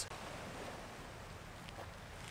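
Faint, steady outdoor ambience, mostly a low wind rumble, with no distinct events.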